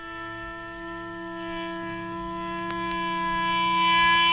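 A single sustained electric guitar note feeding back, held steady in pitch and swelling gradually louder, with a higher feedback tone growing in about halfway through.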